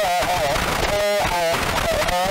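Harsh noise from a ball-gag contact microphone fed through distortion pedals: a loud wall of distorted noise with wavering, bending pitched tones that break off and return.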